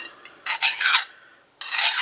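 A coarse Nicholson hand file rasping across the hardened steel impeller shaft of a Vortech supercharger in two strokes of about half a second each. The file is skating over the hardened surface and hardly cutting.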